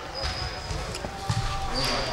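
Basketballs being dribbled on a gym court in the background: dull thuds repeating every few tenths of a second, with a couple of brief high squeaks.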